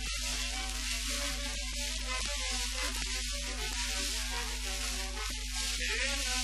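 Music from a 1949 Greek popular song recording, a run of short melodic notes, carried on the steady hiss and low hum of an old record transfer.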